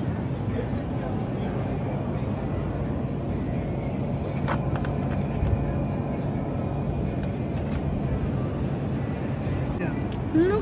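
Steady supermarket background noise with a low steady hum, as from the open refrigerated meat display cases, and a faint click about four and a half seconds in.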